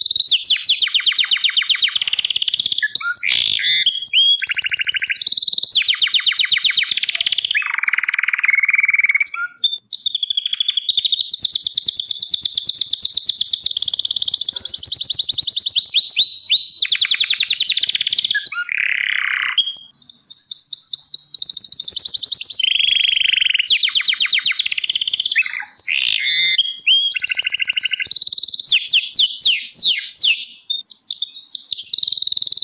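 Gloster canary singing a long, continuous song of rapid trills and rolls, switching to a new phrase every second or two, with brief pauses about ten and twenty seconds in.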